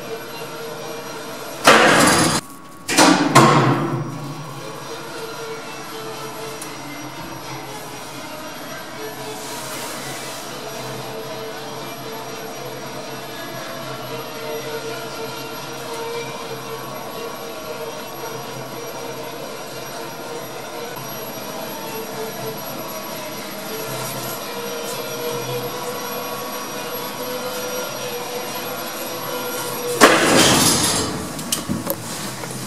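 Lift car travelling in its shaft, heard from on top of the car: a steady rushing rumble with a faint even hum, and two loud bursts of noise about two and three and a half seconds in.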